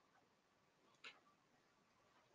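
Near silence, with one short faint click about halfway through.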